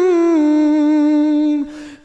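A man's voice singing an Urdu nazm unaccompanied, holding one long note that sinks slightly in pitch and fades out about one and a half seconds in, followed by a brief soft hiss.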